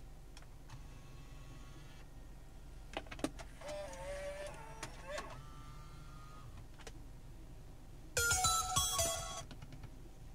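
Motorised touchscreen panel of a Kenwood DDX9017S head unit tilting open for the CD slot: a few light clicks from button presses, then a whirring motor with a wavering pitch. About eight seconds in there is a louder burst with several steady tones that lasts just over a second and then stops.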